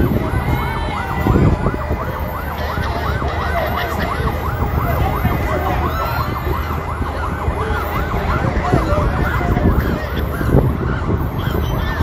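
Vehicle siren in a fast yelp, a rising-and-falling wail repeating about three times a second and fading near the end, over the rumble of the crowd and slow-moving vehicles of a motorcade.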